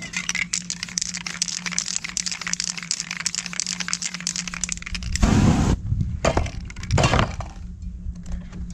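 Aerosol spray-paint can sprayed onto paper in strokes, a crackly, spitting hiss, followed by a few shorter, louder bursts of spray in the last three seconds.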